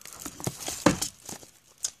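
Plastic-wrapped gift card packs rustling and crinkling as they are handled and pushed back onto a wooden shelf, with a few sharp clicks and knocks, the loudest a little under a second in.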